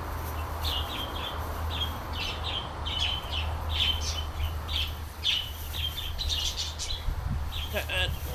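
Small birds chirping in short, repeated calls throughout, over a steady low hum.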